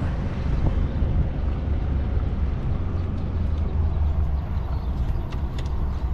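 Heavy truck's diesel engine running at low revs, heard from inside the cab while the lorry manoeuvres slowly: a steady low rumble.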